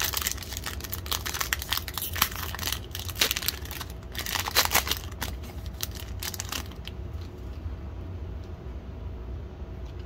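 Wrapper of a Panini Donruss Optic football card pack crinkling and tearing as it is ripped open by hand. The crackling is busiest in the first seven seconds, loudest around the middle, and then dies down to faint rustling.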